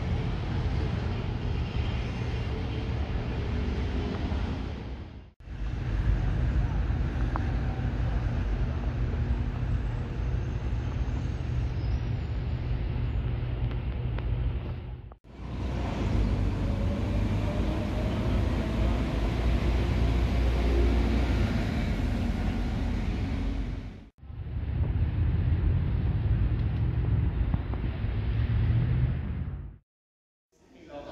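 Outdoor city ambience: a steady deep rumble of road traffic, heard in four takes that cut off abruptly about 5, 15 and 24 seconds in.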